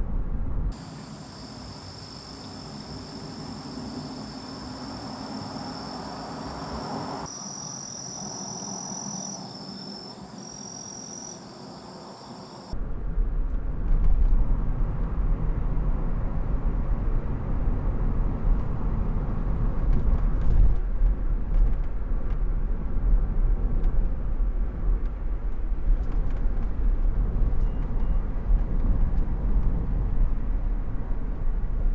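A steady high-pitched insect chorus of several even tones for about the first twelve seconds. It then cuts abruptly to the low, steady road and engine noise inside the cabin of a Honda S660 (turbocharged three-cylinder kei sports car) driving along a mountain road.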